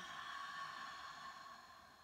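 A woman's deep exhale through the open mouth after a full breath in through the nose, a breathy sigh that fades out over about two seconds.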